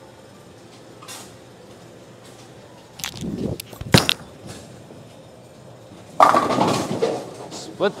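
A Roto Grip Exotic Gem bowling ball is released onto the lane with a sharp thud about four seconds in. It rolls down the lane and crashes into the pins a little over two seconds later, the loudest sound, with the pins clattering and dying away over about a second.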